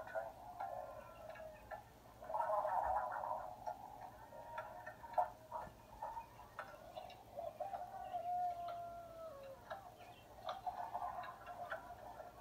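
Tinny soundtrack of a children's puppet show played through a tablet's small speaker: irregular clicking and ticking with short tones, and a long, slowly falling tone about eight seconds in.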